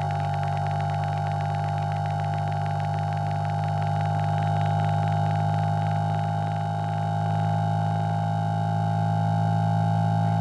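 Low test tone from a 1 Hz to 150 Hz sweep played on a Motorola phone's speaker, heard as a steady hum with a stack of higher overtones above it.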